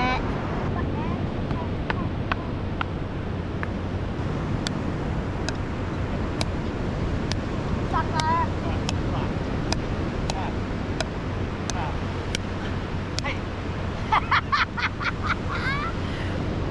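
Beach paddle-ball rally: a small ball struck back and forth with paddles, one sharp crack about every second for more than a dozen hits, over steady surf and wind noise. The hits stop a few seconds before the end.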